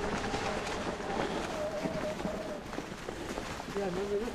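Mountain bike tyres rolling over dry leaf litter on a dirt trail, making a steady rustling noise broken by scattered small clicks and knocks.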